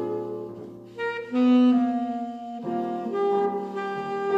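Tenor saxophone playing a slow, lyrical melody over piano accompaniment. The sound thins out just before a second in, then a louder new phrase begins.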